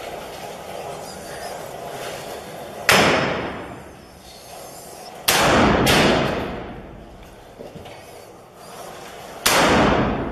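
Four single rifle shots from a Kalashnikov-type rifle fired out of a room: one about three seconds in, two in quick succession around five and a half seconds, and one near the end. Each crack is followed by a long echoing tail.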